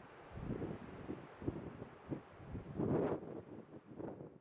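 Wind buffeting the microphone in irregular gusts, with a low rumble. The strongest gust comes about three seconds in.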